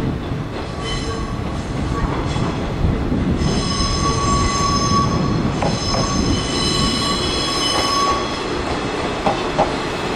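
JR 185 series electric train running past slowly, a low rumble of its wheels and running gear building up over the first few seconds. High-pitched wheel squeal comes and goes over it, strongest in the middle, and a few clacks over rail joints come near the end.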